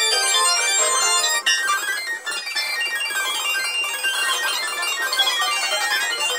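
Digital piano played fast, in dense runs of notes with little bass; from about a second and a half in the notes thicken into a busier, blurred flurry.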